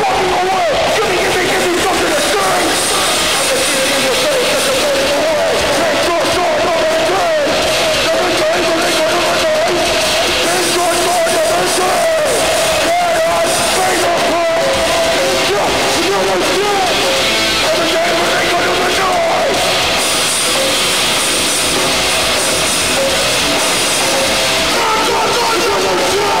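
Hardcore band playing live at full volume: distorted electric guitars and drums, with shouted vocals over them.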